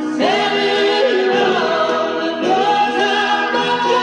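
Live concert recording of a song: several voices singing in harmony over the band, with a new sung phrase coming in just after the start.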